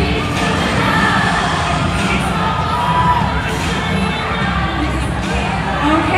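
Large crowd of cheerleaders and spectators cheering and shouting steadily, with music playing underneath.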